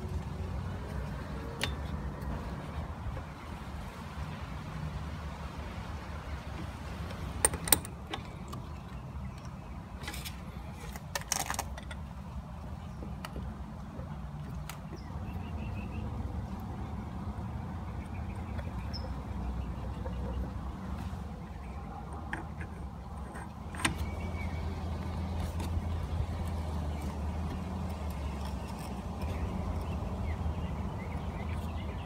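Small metal parts of a brass water pressure regulator knocked and clicked while being fitted by hand: a few sharp clicks, two close together about a quarter of the way in, more shortly after, and one more later. Under them runs a steady low rumble.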